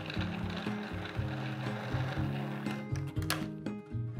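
Food processor motor whirring as it blends flour, maple sugar and cold butter into a sandy crumb, stopping about three seconds in. Background guitar music plays throughout.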